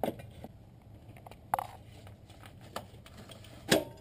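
A few sharp metal clinks and knocks, irregularly spaced, as a wrench works the alternator belt adjuster under the hood to slacken the drive belt; the loudest comes just before the end.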